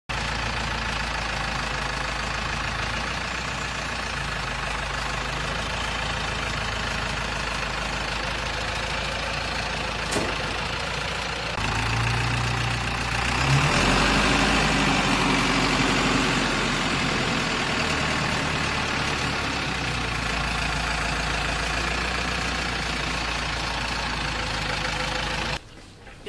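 Forklift engine running steadily while it lifts a heavy crate into a shipping container. It gets louder about halfway through and cuts off just before the end.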